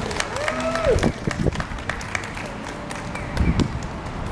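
Scattered hand clapping from a small audience, as separate claps rather than a dense roar, with a person's voice briefly in the first second.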